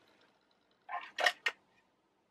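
Three short clicks and knocks about a second in, close together: household items being put down and picked up on a desk.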